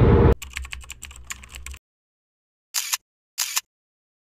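Rapid computer-keyboard typing clicks over a low hum for about a second and a half, then dead silence broken by two short hissy bursts about half a second apart.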